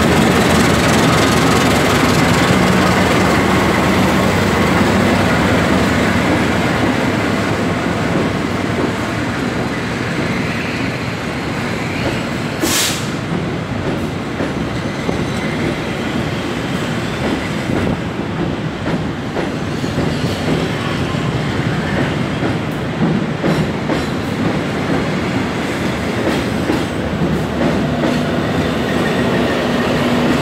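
Passenger train rolling past: steel wheels clattering over the rail joints and a steady running rumble. The CC 206 diesel-electric locomotive's low engine hum is heard in the first few seconds, and a low hum returns near the end. One sharp crack comes about thirteen seconds in.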